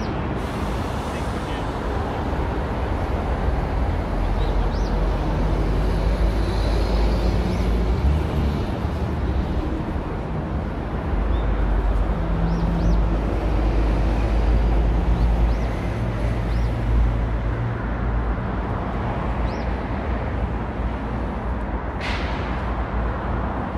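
Road traffic on a busy multi-lane city avenue: a continuous rumble of passing cars, louder for a few seconds at a time as vehicles go by close to the kerb.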